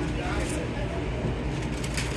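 Steady background noise of a busy commercial kitchen: a constant low hum with faint voices talking in the distance.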